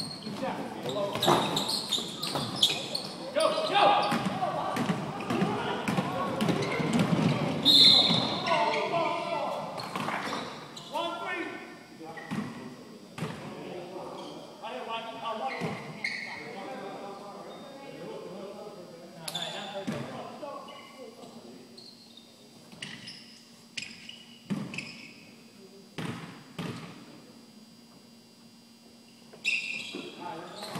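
Basketball game on a hardwood gym court: a ball bouncing and players' voices, echoing in the large hall. It is busy and loud for the first ten seconds or so, then thins to scattered single thuds.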